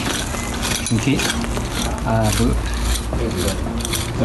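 A hand cultivator scraping and tearing at the roots and soil of a tree's root ball, in irregular scratchy strokes, with snatches of a man's voice in between.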